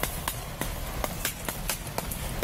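Running footsteps and rustling as people dash through tall grass, heard as a quick, uneven series of short thuds and knocks over a steady noisy rush, with the handheld recording jostled at each step.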